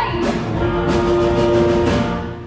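Musical's band playing under the scene: one sustained note held over a light, steady beat.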